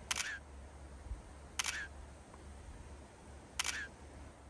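Camera shutter clicks, three of them about two seconds apart, over a faint low hum.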